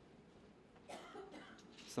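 Quiet hall room tone, with a faint cough about a second in.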